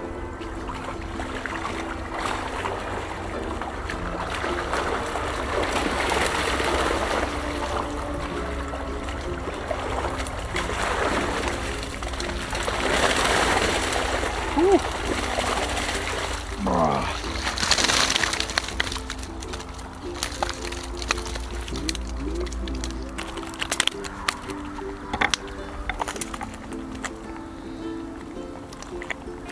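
Water splashing and pouring out through a mesh fish keepnet as it is hauled up out of the river, loudest around the middle, over steady background music.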